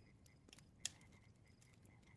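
Near silence with a faint campfire crackle in the background: one sharp crackle a little under a second in.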